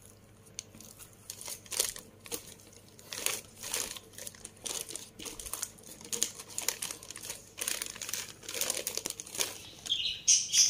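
Thin plastic sheet crinkling and rustling in irregular crackles as pounded glutinous rice is pushed and levelled in a plastic-lined bowl with a plastic rice paddle.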